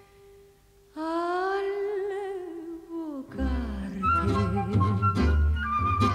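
Tango orchestra music. After about a second of near silence, one long note with vibrato is held for about two seconds. Then the full orchestra comes in with a rhythmic bass and chords.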